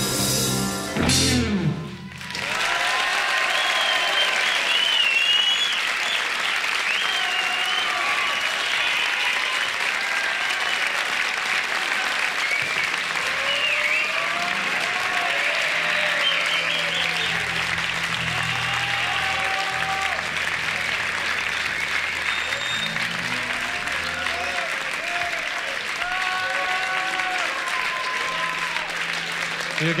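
A live rock band's last chord cuts off about two seconds in, and audience applause, cheering and whistling follow. Through the applause a few guitar and bass notes sound as the band tunes up between songs.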